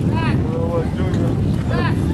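Wind buffeting the camcorder's microphone with a steady low rumble, and two short shouted calls from voices, one just after the start and one near the end.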